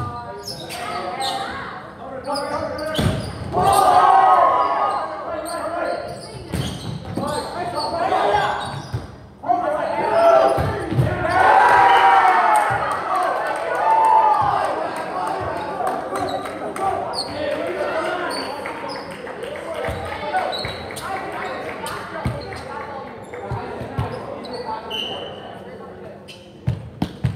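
Volleyball rally in a gymnasium: the ball knocking off hands and the floor, with players and spectators shouting and cheering, loudest about four seconds in and again from about ten to fourteen seconds in as a point is won. The hall gives it an echo.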